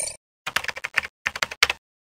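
Computer keyboard typing sound effect: a rapid run of keystrokes begins about half a second in and stops after just over a second.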